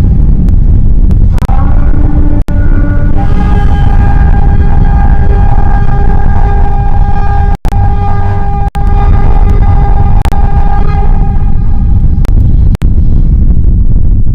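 Loud cinematic sound design: a heavy low rumble under a sustained steady high tone with overtones, broken by several brief dropouts.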